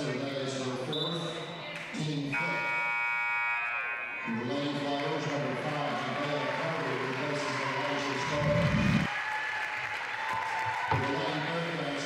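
Gymnasium during a stoppage in play after a foul: a brief referee's whistle about a second in, then the scoreboard horn sounds for about two seconds, over crowd hubbub and music in the hall. A single thump comes near the nine-second mark.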